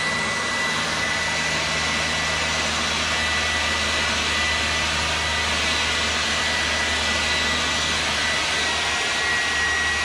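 SnapFresh 20V cordless battery leaf blower running at full speed: a steady rush of air with a high, even electric-motor whine. It is aimed at leaves on grass, which it barely moves, for lack of blowing power.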